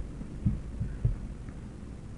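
Low steady hum with three or four soft, short low thumps in the first second, heard in a pause between spoken sentences.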